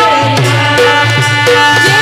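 Instrumental break in a Marathi folk devotional song: a harmonium holds steady notes over a hand-drum rhythm, with no clear singing.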